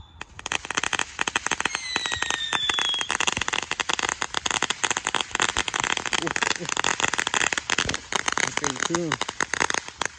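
Ground fountain firework crackling with a dense, rapid run of tiny pops as it sprays sparks, and a thin whistle that falls slightly in pitch about two seconds in.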